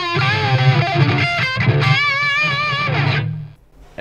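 Distorted electric guitar, a Gibson Les Paul through a Randall amp, playing a lead line of held notes with wide vibrato and bends. It stops a little after three seconds in, and the last note dies away.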